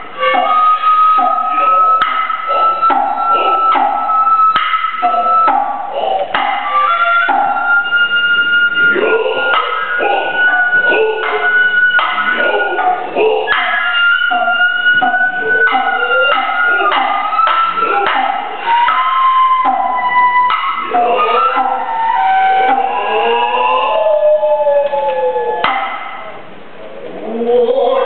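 Noh hayashi ensemble: the nohkan bamboo flute plays long, held, slightly wavering high notes that step up and down, over frequent sharp strikes of the hand drums, with the drummers' drawn-out vocal calls between strikes.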